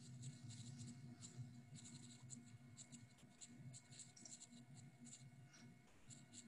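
Near silence: faint room tone with soft, irregular scratchy ticks.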